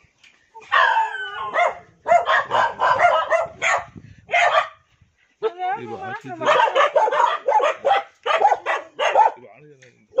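Several dogs barking in quick, repeated barks, in two long bouts with a short break about halfway through.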